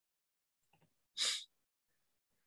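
A single short, sharp breath noise from a man, about a second in, like a quick sniff or intake of breath.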